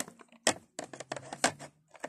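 Small plastic toy figures and a plastic dollhouse being handled: a string of light clicks and knocks, about seven over two seconds, with a faint low hum in the middle.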